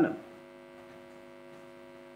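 Steady electrical mains hum, a low buzz made of several even tones, running under a pause in speech on a remote video-call audio line.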